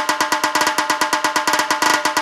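Rapid tasha drumming in a dhol-tasha DJ mix: dense, fast stick strokes over a steady ringing tone, with no bass underneath, tightening into a roll near the end.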